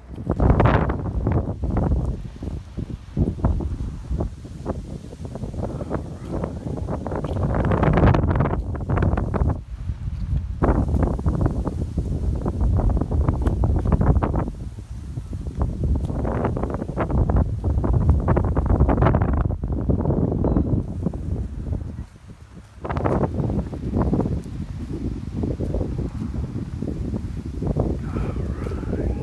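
Wind buffeting a smartphone's microphone in uneven low gusts, with short knocks from the phone being carried at a walk; it drops away briefly about three-quarters of the way through.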